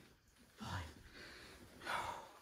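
A man breathing hard from the exertion of a set of press-ups: a short spoken count about half a second in, then a stronger rush of breath out near the end.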